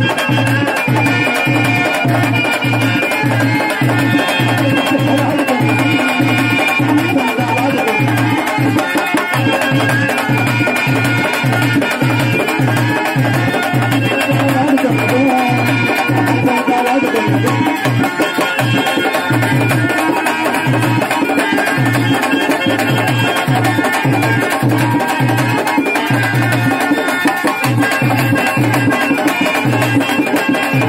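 Live traditional folk music with hand drums, a clay pot drum and a two-headed barrel drum, keeping a steady beat of about two strokes a second under held melody notes.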